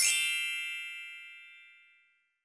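A single bright bell-like ding, struck once and ringing out, fading away over about two seconds.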